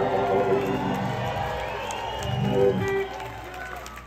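Live reggae band finishing a song: sustained chords ring out and a final accent cuts off about three seconds in. Crowd voices and cheering follow.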